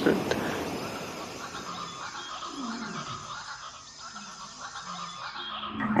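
Quiet ambient soundscape: a steady hiss with faint, slow gliding low tones, fading toward the middle and swelling again near the end.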